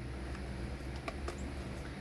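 Faint scraping and a few light clicks from the plastic spool and cover of a Stihl string-trimmer head being handled and fitted together.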